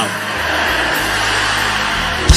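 Background music of steady sustained chords with an even wash of noise over it, filling a gap in the preaching.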